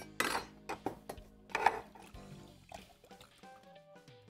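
A glass bottle knocking and clinking a few times against a metal saucepan as orange juice is poured into the pan juices.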